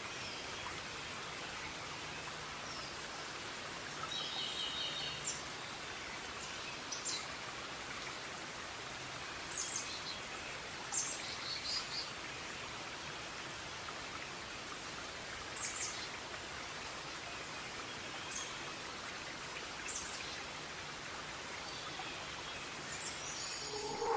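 Forest ambience: a steady soft hiss of outdoor background with short high bird chirps every few seconds and a brief bird trill about four seconds in.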